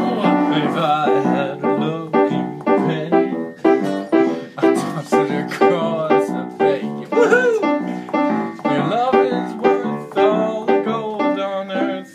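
Acoustic guitar strummed in a steady rhythm together with an electric keyboard playing chords: an instrumental passage of a song.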